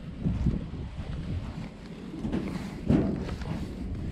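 Heavy steel filing cabinet being gripped and rocked by hand: dull, uneven knocks and handling noise, with one louder knock about three seconds in.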